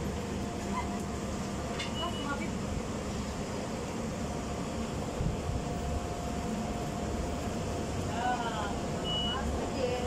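Steady background hum and noise at an electronic ticket gate, with two short high beeps from the gate's ticket reader, one about two seconds in and one near the end.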